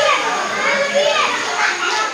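A group of children shouting and chattering at play, several high voices overlapping at once.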